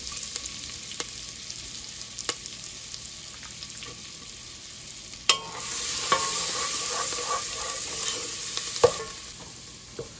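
Butter sizzling gently in a nonstick pot with minced garlic and parsley. About five seconds in, a wooden spoon starts stirring and scraping, and the sizzle grows louder, with a sharp knock near the end.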